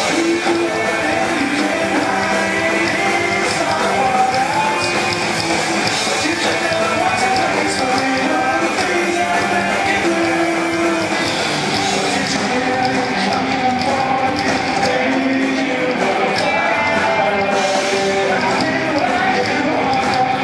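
Live punk rock band playing at full volume: electric guitars, bass guitar and drums, with a singer's vocal line over them.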